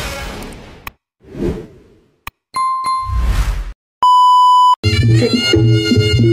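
The intro music fades out, followed by subscribe-animation sound effects: a whoosh, a sharp mouse click, a ringing ding and a loud steady beep lasting under a second. Just before the end, a live reog Ponorogo ensemble starts up with drums, gongs and the reedy slompret.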